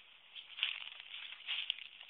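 Rustling and crackling as someone moves through brush holding the camera, in several short bursts.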